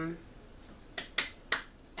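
Three short, sharp clicks in quick succession, about a second in, all within half a second.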